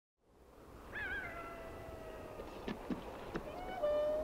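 A howling animal call: it wavers at first, then settles into one long, slowly falling note, and a second howl begins near the end. A few sharp clicks sound in between.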